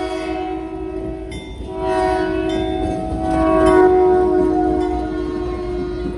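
Diesel locomotive's multi-note air horn sounding a long blast as the train passes, loudest about four seconds in and dropping slightly in pitch as the locomotive goes by, over the rumble of the passenger cars rolling on the rails.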